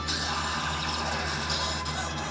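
Dramatic background music from a TV show's soundtrack, played through a television's speaker and picked up in the room, over a steady low hum. A high hiss comes in about a fifth of a second in and fades after about a second and a half.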